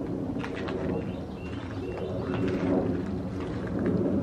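Outdoor ambience: birds calling faintly over a steady low rumble, with a couple of faint ticks about half a second in.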